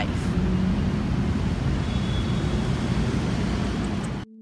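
Steady hum of city traffic, an even outdoor background noise with no single vehicle standing out.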